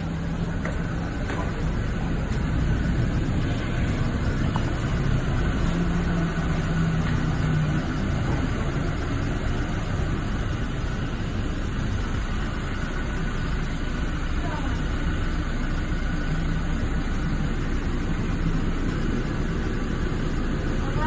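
Car engine idling steadily, a low even rumble, with indistinct voices over it.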